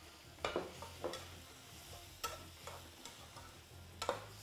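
A metal slotted spatula stirring chopped bottle gourd, onion and tomato in an aluminium pressure-cooker pot, with a few scattered clinks and scrapes of metal on the pot over a faint sizzle of the vegetables frying in oil.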